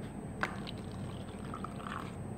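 Drink being poured and handled in a thin plastic cup, quiet, with one light plastic click about half a second in.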